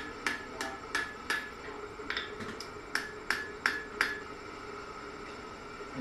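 Hand hammer striking a red-hot iron bar on an anvil, drawing the metal out: two runs of quick blows, about three a second, each with a short ring, stopping about four seconds in.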